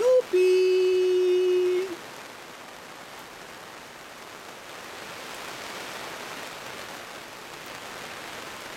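A voice holds a final sung note for about two seconds, then stops abruptly. After it comes the steady, even hiss of falling rain.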